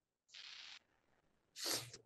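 A person's breath on a microphone: a short faint hiss about half a second in, then a stronger breath near the end.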